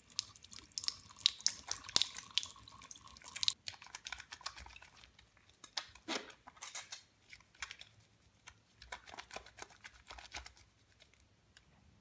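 Wet hands rubbing shower gel into a lather: soft squelching and crackling of suds. A hiss of running tap water accompanies the first three and a half seconds and stops abruptly.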